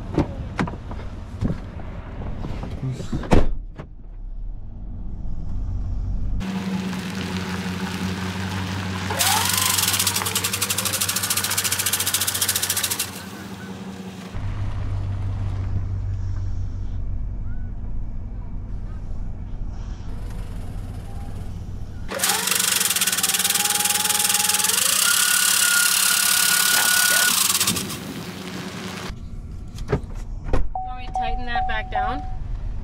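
Pickup truck engine running, heard from inside the cab, with door-handle clicks and a door shutting about three seconds in. Two stretches of loud hissing noise are laid over the engine, about nine to thirteen seconds in and again from about twenty-two to twenty-eight seconds.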